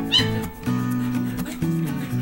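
A puppy gives one short, high-pitched squeal just after the start, over background guitar music.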